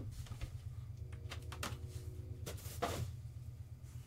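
An 8x10 photo being handled and slid out of its box, with a few short scrapes and taps about a second in and again near three seconds, over a steady low hum.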